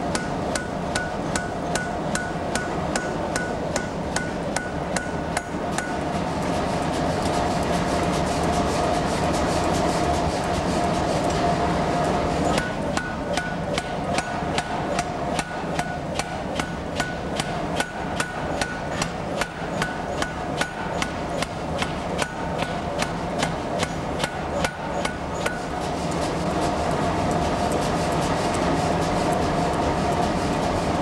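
Power forging hammer striking a red-hot iron knife blank with its steel cutting layer, in rapid, even blows. The blows run on steadily as the blank is drawn out under the hammer.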